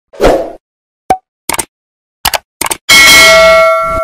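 Sound effects of an animated subscribe outro: a short whoosh, a run of sharp clicks and pops, then a loud ringing chime with several held tones from about three seconds in.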